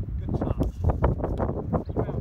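Wind buffeting the microphone, with indistinct voices talking in the background and a few light knocks.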